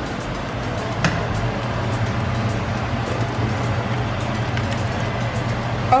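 Eggs frying in hot oil in a small pan, a steady sizzle with fine crackling, and one sharp tap about a second in. Background music with a low bass hum runs underneath.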